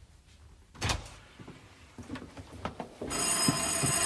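A single thump about a second in, then an electric bell starts ringing steadily about three seconds in, the doorbell signalling a visitor at the door.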